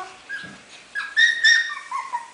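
Havanese puppies, four weeks old, whining in short high-pitched squeaks: a faint one near the start, two louder yips about a second in, and a falling whine near the end.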